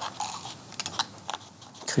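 Sheets of printer paper rustling as they are handled and leafed through, with a few short crisp crackles.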